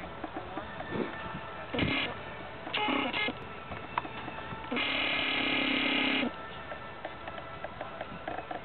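Three buzzing tones over faint outdoor background noise: two short ones, then a louder one about a second and a half long that starts and stops abruptly.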